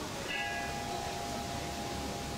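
A single bell struck about a third of a second in. Its high overtones die away within half a second while a lower pair of tones keeps ringing, over a faint steady background hum.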